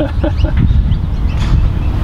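Steady low rumble of wind on the microphone, with a few faint bird chirps.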